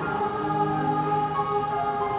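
Girls' treble choir singing a slow piece in harmony, several voice parts holding long notes that change pitch together every second or so.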